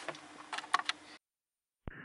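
A few light clicks over quiet room tone. The sound then cuts out completely for about half a second and returns with a sharp click, where the recording is edited over to a different audio source.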